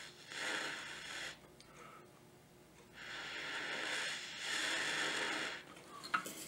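Breath blown through a jeweler's mouth blowpipe across an alcohol lamp flame, a hissing rush of air that heats a solder joint on a charcoal block. There are three long blows, one near the start and two back to back in the second half, with quieter pauses for breath between them.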